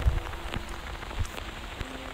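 Steady crackling, rain-like noise with scattered small clicks, over a faint low hum.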